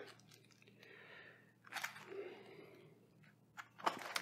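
Quiet handling of raw chicken hearts and their plastic meat tray, with a soft click or crinkle about two seconds in and a few small clicks near the end.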